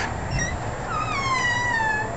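A door hinge squeaking as the door swings open: a brief squeak, then one long squeal that slowly falls in pitch for just over a second.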